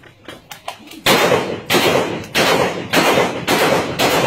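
Remington rifle fired repeatedly into the air: a fast string of very loud shots, about one every 0.6 seconds, beginning about a second in, each blast smearing into the next.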